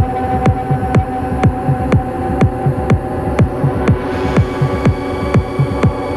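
Electronic dance music playing in a DJ mix: a steady kick drum on every beat, about two a second, under a held synth chord. A brighter, hissier layer comes in about two-thirds of the way through.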